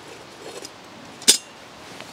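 A single sharp metallic clink about a second and a half in, from the metal camp kettle and its wire handle being handled on the stove, over quiet outdoor background.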